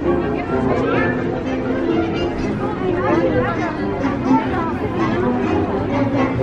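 Several people chattering, over background music.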